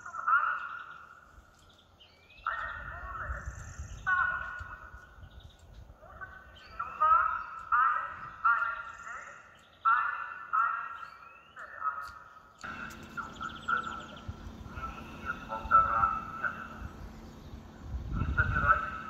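Fire-brigade van's roof loudspeaker broadcasting a coronavirus warning announcement: an amplified voice in short phrases, tinny and narrow-sounding. About twelve seconds in, a low steady hum comes in underneath.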